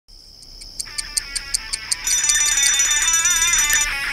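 Alarm clock sound effect: quick ticking at about five ticks a second over a high steady tone, then a loud ringing from about halfway that cuts off shortly before the end.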